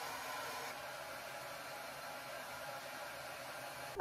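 Handheld hair dryer running, a faint steady hiss of blown air.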